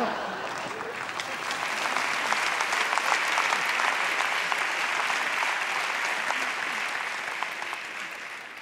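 Studio audience applauding, a dense steady clapping that starts to die away near the end.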